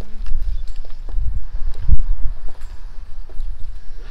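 Footsteps of a few people walking on a concrete sidewalk, with a strong, uneven low rumble of wind buffeting the microphone.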